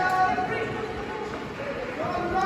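Indistinct voices in a large, echoing sports hall, fading into a steady murmur of room noise.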